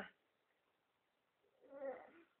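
An eight-month-old baby's short, whiny vocal sound near the end, after a near-silent stretch, as a spoon of fruit puree is fed to him.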